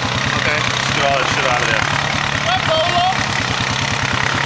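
ATV engine idling steadily, an even low pulsing that holds at one level throughout, with voices over it.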